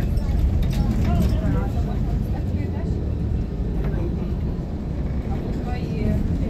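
Steady low rumble of a car's road and engine noise heard from inside while driving, with faint voices talking over it.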